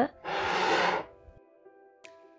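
Soft background music with steady held notes. Near the start, a short hissing burst of noise lasting under a second.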